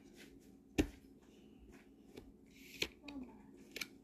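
Yu-Gi-Oh trading cards being flipped through by hand, mostly quiet, with a few sharp card clicks: one about a second in and two more near the end.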